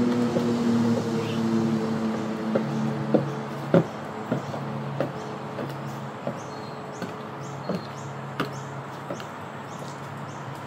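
Six-inch platform mule heels clicking on timber decking, about one step every two-thirds of a second, loudest a few seconds in and fainter towards the end. A steady low hum runs underneath.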